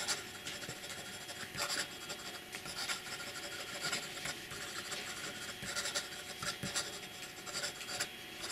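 Fountain pen with a medium 18k gold nib scratching across notebook paper in fast cursive handwriting, a run of short, irregular strokes.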